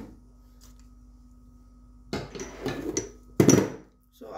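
Kitchen handling sounds during food preparation: after a quiet stretch with a faint steady hum, a run of loud knocks and rustles starts about halfway through, the loudest near the end.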